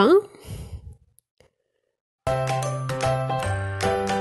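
A voice breaks off, there is about a second of dead silence, then background music starts suddenly just over two seconds in: a light tune with a steady bass line and high ringing notes.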